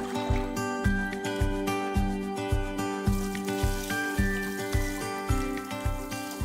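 Background music with a steady low beat under held chords.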